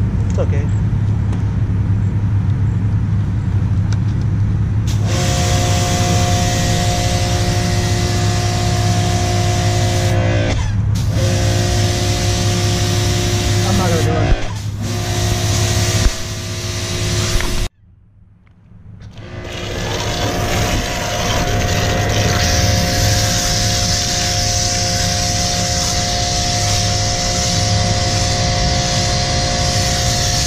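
Pressure washer running through a foam cannon. A steady hum comes first, then from about five seconds in the hiss of foam spray with the pump's steady whine. The sound cuts out suddenly about two-thirds through and builds back up over a few seconds.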